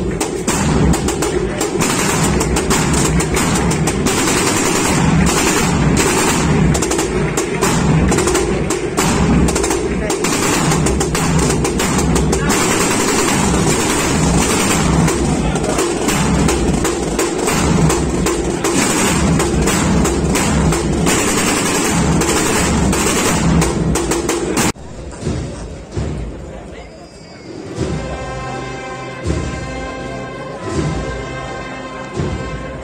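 A long, dense barrage of firecrackers crackling and banging without a break, cutting off abruptly about 25 seconds in. After that come crowd noise and the sustained notes of a brass band starting to play.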